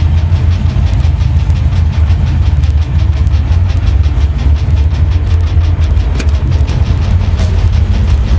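Supercharged 349 cubic-inch stroker V8 in a 1990 Ford Mustang GT idling steadily, with a deep, rapidly pulsing exhaust note.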